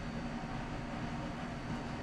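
Steady background hiss with a faint low hum, with no distinct knocks or clicks; the noise of a running appliance or room.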